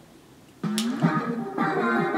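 A recorded K-pop song excerpt starts abruptly about half a second in, with a singing voice over instrumental backing.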